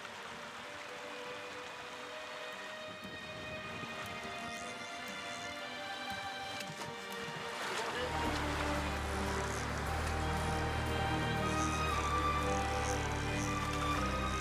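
Background music of sustained held notes that grows louder, with a bass layer coming in about eight seconds in.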